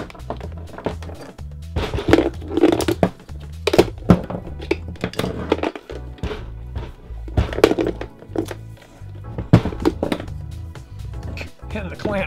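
Background music, with a series of knocks and clatters as a plastic battery charger and its clamp cables are handled and turned over on a wooden tabletop.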